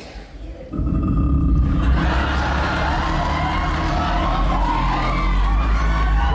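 Live concert recording of an a cappella bass singer holding a very deep, steady low note, with an audience cheering and whooping over it; both set in about a second in.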